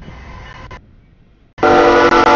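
A CSX freight train approaching a grade crossing with a low rumble, then the locomotive's horn sounding loud about a second and a half in as it reaches the crossing.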